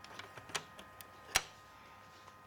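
Light plastic clicks and taps from a fingertip on the glossy plastic front panel and drive-bay doors of a Dell XPS 730 computer case. Two of the taps, about half a second in and near one and a half seconds, are louder than the rest.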